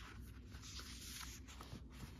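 Faint rustling of paperback book pages being turned and leafed through by hand.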